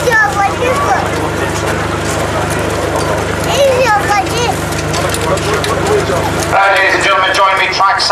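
A harness horse's hooves clopping as it walks, with men talking around it over a steady low hum; a man's voice comes in louder near the end.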